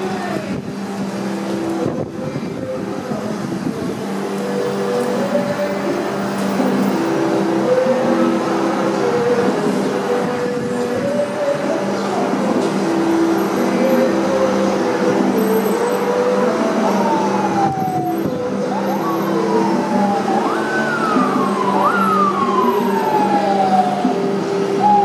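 City street traffic with vehicle engines running, and an emergency vehicle's siren sounding over it. In the last third the siren climbs quickly and falls slowly in pitch several times.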